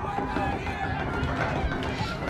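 Film soundtrack of overlapping wordless voices crying out and shouting, over a dense low rumble with irregular knocks.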